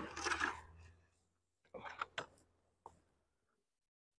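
Soft rustle, then a few light knocks of a beehive nuc box being handled and shifted, with one faint tick about three seconds in.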